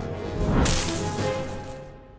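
A loud swishing whoosh, a cartoon sound effect of the flying squirrel hurtling through the air. It swells to a peak about half a second in, then fades, over the orchestral film score.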